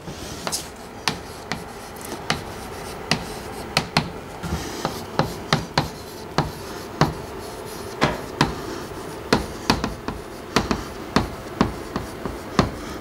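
Chalk writing on a blackboard: a run of sharp ticks and short scrapes as each letter is struck and drawn, irregular, about two a second.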